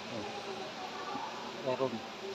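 Indistinct voices of people talking in low tones, with a short louder stretch of a man's voice near the end.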